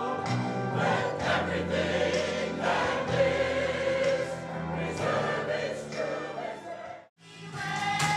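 Mixed choir of men and women singing together in a church. About seven seconds in the singing cuts off abruptly, and a children's choir starts singing.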